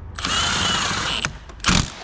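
A cordless Milwaukee M12 Fuel power tool runs for about a second with a wavering motor whine, then stops. A short, loud clunk follows near the end.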